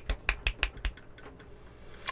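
A quick run of about six sharp taps in the first second, as of a hard object being handled.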